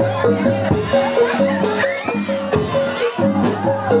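Live Javanese jaranan ensemble playing: a quick, repeating pattern of notes on pot gongs over a steady low note and hand-drum strokes.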